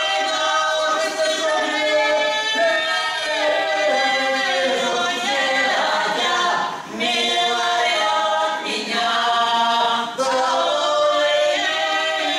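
Russian folk song sung a cappella by a small mixed ensemble, three women's voices and a man's, several parts at once. The singing pauses briefly about seven seconds in and again about ten seconds in, between phrases.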